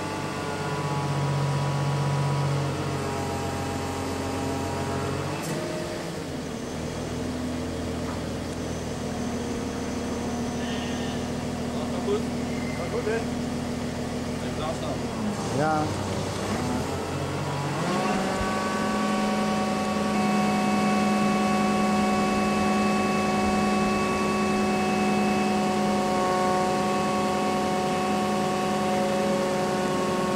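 Crane engine running steadily while lowering a windmill cap on its cables. Its note dips twice, then rises just past halfway to a higher, steady speed that it holds.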